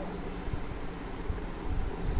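Acer laptop's damaged built-in speakers playing a video's ocean-wave soundtrack, a steady, low, distorted hiss of surf. The speakers were blown out by a loud high-pitched sound, so playback comes through very low and distorted.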